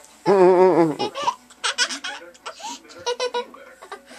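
Laughter: one loud, wavering laugh about a quarter of a second in, then shorter bursts of laughing and voice.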